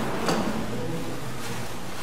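Industrial sewing machine's motor running with a steady hum while not stitching, as the net fabric is positioned under the presser foot, with one sharp click shortly after the start.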